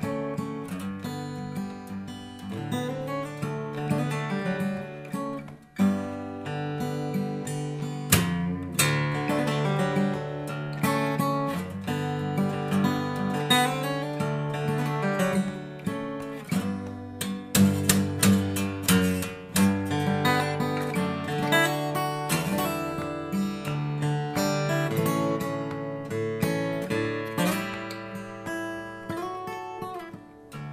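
Sigma cutaway steel-string acoustic guitar played fingerstyle, picked notes and chords ringing on with a long sustain, with a few sharply struck louder chords about eight and seventeen seconds in.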